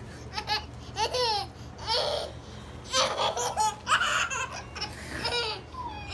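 Baby laughing in repeated bursts, about one round of laughter each second.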